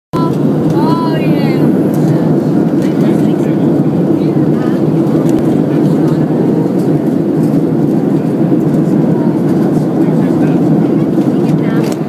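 Steady, loud airliner cabin noise: the drone of the jet engines and rushing airflow, heard from inside the cabin at a window seat over the wing.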